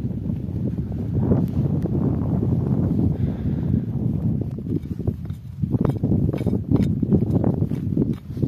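Wind rumbling on the microphone, with crunching footsteps in snow coming close in the second half.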